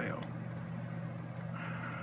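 A steady low electrical hum, with faint soft rustling of small cardstock pieces being handled on a craft mat.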